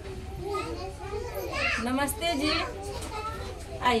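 Young children's voices chattering and calling out, with a woman's voice near the end.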